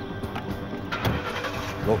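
A police patrol car's driver door shutting with a single thump about a second in, with a car engine starting, over background music.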